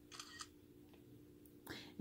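Faint electronic camera-shutter sound from a TickTalk 3 kids' smartwatch taking a photo, one short burst just after the start, over a low steady hum.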